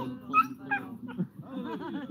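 A dog giving short, high-pitched yips and whines, twice in the first second, then a wavering whine, among people laughing.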